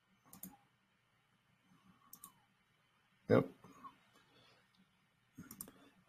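A few scattered sharp clicks of a computer mouse, a second or more apart, with one short vocal sound about three seconds in.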